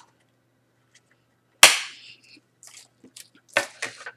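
A single sharp snap or smack about one and a half seconds in, the loudest sound, dying away quickly, followed by a few softer clicks and rustles from trading cards and their packaging being handled.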